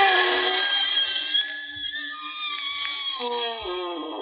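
Radio sound-effect creaking door: one long, drawn-out wooden creak with a wavering pitch that slides down near the end.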